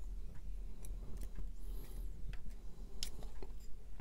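Faint, scattered small clicks and ticks of a CR2032 coin cell and its metal holder on a small circuit board being handled with fingers and tweezers, over a low steady hum.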